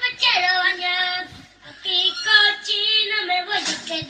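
A high-pitched voice singing a melody in long held notes, phrase after phrase, with short breaths between.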